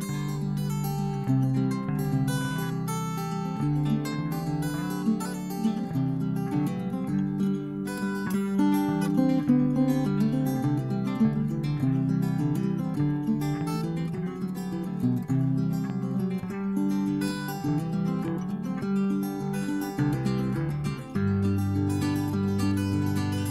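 Instrumental opening of a Mexican trova song, played on acoustic guitar, picked and strummed at a steady level.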